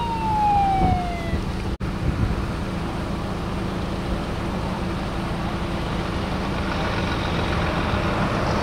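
Fire engine siren winding down, a single falling tone that fades out about a second in, over a steady low rumble.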